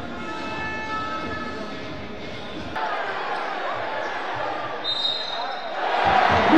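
Basketball game sound: a ball bouncing on the hardwood court and sneakers squeaking, over arena crowd noise, with a short high whistle about five seconds in. Crowd noise swells at the end.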